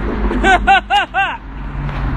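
A woman laughing in four quick, even "ha" bursts about half a second in, over a steady low rumble.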